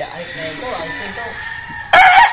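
A gamefowl stag starts a loud crow near the end, after a quieter stretch with faint scattered calls.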